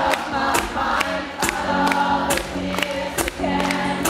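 Live pop-rock band playing with many voices singing together over a steady beat of about two hits a second.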